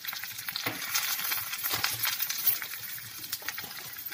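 Peanuts, green chillies and spices sizzling in hot oil in a frying pan, with many small crackles and pops over a steady hiss.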